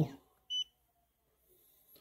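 A single short, high beep from the Neoden YY1 pick-and-place machine's touchscreen, sounding about half a second in as a button is pressed.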